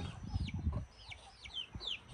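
Young chicks peeping: a string of short, high, downward-sliding peeps, about two a second, over a low rumble in the first second.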